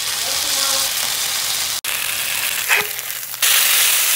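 Ground-beef smash burger sizzling in a hot cast iron skillet as a metal spatula presses it flat. The sizzle cuts out for an instant just before two seconds in and gets louder about three and a half seconds in.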